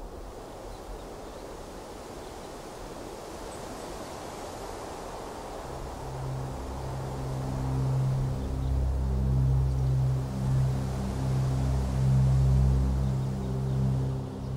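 Documentary background music: a soft airy wash, then low sustained notes swelling in about six seconds in and growing louder.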